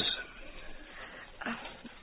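A pause in an old radio broadcast recording: faint steady hiss with no sharp highs. A woman's short hesitant "uh" comes about one and a half seconds in.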